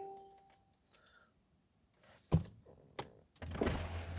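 A short electronic chime from the 2019 Mercedes-AMG E53 convertible, then a soft thunk a little past two seconds in and a click. About three and a half seconds in, the steady hum of the power windows and soft-top mechanism starts up as the windows begin lowering to open the top.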